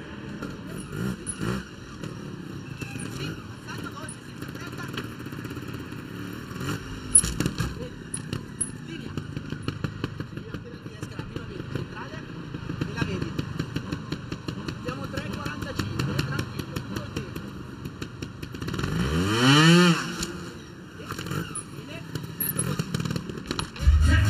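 Vertigo trials motorcycle engine blipped in short bursts while the bike clatters and knocks on the obstacles, with a sharp rev that rises and falls about nineteen seconds in, the loudest moment. Arena crowd noise underneath.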